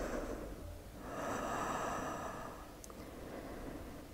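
A woman's slow, faint breathing during a held yoga stretch: two long breaths, the second starting about a second in and lasting longer.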